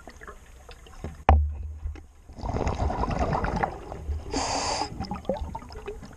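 Scuba diver breathing underwater through a regulator: a stretch of exhaled bubbles about two and a half seconds in, then a short inhalation hiss. A sharp knock comes about a second in.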